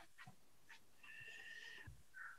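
Near silence: room tone with a few faint clicks and a faint high tone lasting about a second, starting about a second in.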